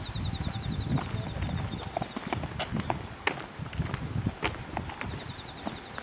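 Footsteps on an asphalt path: irregular scuffing steps over a low handling rumble. A faint, high, rapidly pulsing chirp sounds for the first two seconds.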